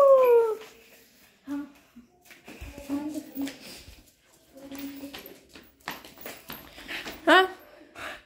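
Pomeranian dog whining: a long falling whine at the start, quieter soft whimpers and murmurs through the middle, and another loud high whine about seven seconds in, its reaction to a familiar person leaving the house.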